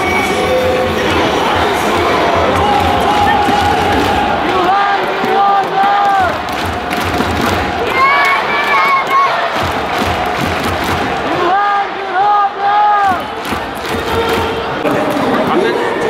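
A packed Korean baseball crowd cheering and chanting in unison over stadium PA music with a thudding beat. A short three-beat chant is heard twice, in the middle and again near the end.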